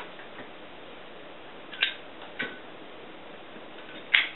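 Two short, sharp clicks about half a second apart, over a steady low hiss.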